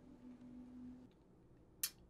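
A low, steady held tone from the soundtrack stops about a second in. Near the end comes a single sharp click, the loudest sound here.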